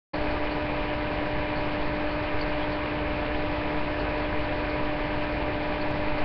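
Steady hiss with a constant hum tone and no other events: background noise picked up by a webcam's microphone.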